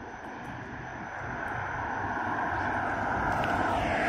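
Road traffic passing, a steady noise of engines and tyres that grows gradually louder as a vehicle approaches.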